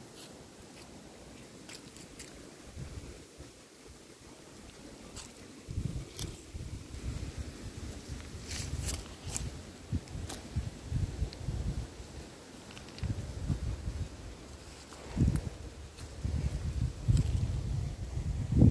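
Footsteps crunching on dry leaf litter and twigs, scattered sharp crackles. From about six seconds in, a gusty low rumble of wind buffeting the microphone comes and goes.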